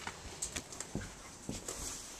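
Quiet footsteps and a few soft knocks from a handheld camera being carried through a hallway, several irregular steps over faint room noise.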